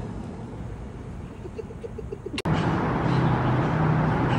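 Outdoor ambient noise with a steady low hum, of the kind distant traffic makes. It jumps abruptly to a louder, steadier hum about two and a half seconds in.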